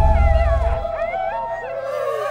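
A pack of canines howling in chorus: several voices glide up and down over one long held howl. A deep rumble sounds under them in the first second and fades out.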